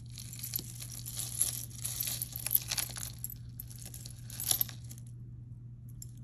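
Metal and glass costume jewelry clinking and rustling as a hand sorts through a pile of chains and beads, with a few sharper clinks; it dies down near the end.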